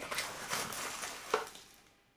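Faint handling noise of borax being spooned into a glass vase of water, with one short, louder sound a little past halfway. The sound then fades out to silence near the end.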